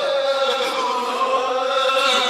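Chanting voices holding long notes whose pitch slowly wavers and glides, without words.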